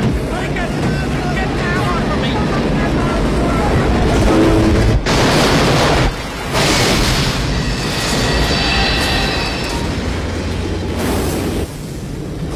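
A train striking a car on the railway tracks: voices in the first couple of seconds, then a sudden loud crash about five seconds in, followed by a long grinding rumble with high metallic screeching. Film score runs underneath.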